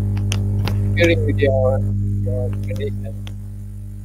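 Loud steady electrical mains hum on a webinar microphone line, a sign of a faulty or badly connected microphone. Sharp clicks come from the earphone-microphone cable being handled, a voice speaks briefly over the hum, and the hum eases off toward the end.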